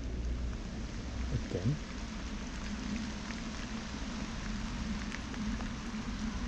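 Steady rain falling, an even hiss, with a low rumble underneath.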